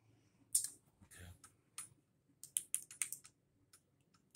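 Light, irregular clicks and taps from a handheld phone being handled and tapped, with a quick run of them about two and a half seconds in.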